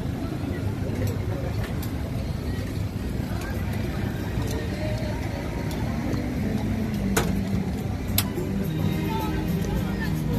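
City street ambience: a steady low rumble of traffic under background voices and faint music, with two sharp clicks about seven and eight seconds in.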